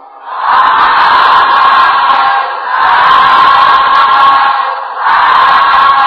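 A congregation calling out together in unison three times, each call drawn out for about two seconds: the Buddhist response 'sādhu, sādhu, sādhu'.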